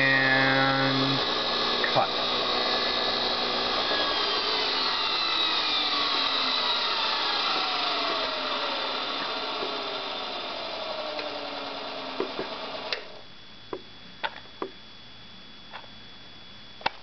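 Bench-powered electric motor running with a whine that falls steadily in pitch as it slows, its supply voltage being turned down. The running sound stops suddenly about 13 seconds in, followed by a few sharp clicks.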